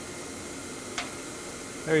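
Two air-track gliders collide head-on with one short, sharp click about a second in, sticking together in a perfectly inelastic collision. Under the click runs the steady hiss of the air track's blower.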